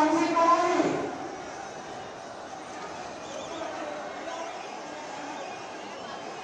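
A man's voice speaking loudly for about the first second, then the lower murmur of a crowd with scattered distant voices.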